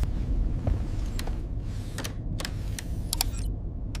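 Spacecraft cabin ambience: a steady low rumble with sharp mechanical clicks scattered through it, several coming in quick pairs.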